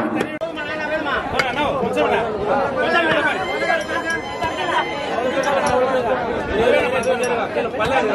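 Several men talking over one another in close, busy chatter, with a couple of short sharp knocks.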